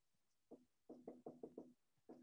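Dry-erase marker writing on a whiteboard: a quick run of about seven short strokes with a faint squeak, starting about half a second in.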